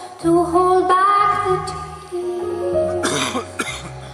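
A small band playing live, a melody sliding over a steady bass line, with a female singer's voice. About three seconds in, a short cough sounds close to the recorder.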